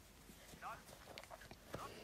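A faint, distant voice speaking briefly twice over low room tone, with a few faint clicks.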